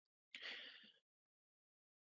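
Near silence with one short, faint breath of a man drawn in about a third of a second in.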